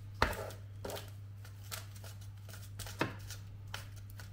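Wooden spoon spreading and pressing grated apple filling in a parchment-lined baking tin: irregular soft taps and scrapes, the loudest just after the start and about three seconds in, over a steady low hum.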